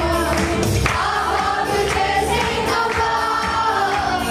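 Worship band playing a Christian song: women singing the lead into microphones with a group of backing singers, over electronic keyboard accompaniment with a steady beat.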